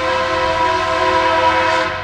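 Train air horn sounding one long steady chord, which cuts off just before the end, over the rumble of the passing train.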